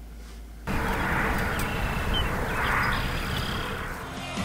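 Outdoor field ambience that starts suddenly about a second in: a steady rushing noise that swells twice, with a few faint short bird-like chirps.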